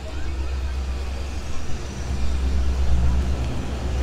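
Outdoor street-market ambience: a steady low rumble with faint voices of shoppers passing by.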